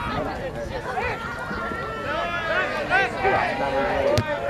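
Several people's voices calling out and talking at once, overlapping and indistinct, from players and spectators at a soccer match.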